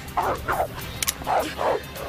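A dog barking: two quick pairs of barks about a second apart.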